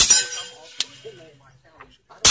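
A suppressed handgun fires one shot, a sharp crack with a bright metallic ringing tail. A lighter sharp crack follows under a second later.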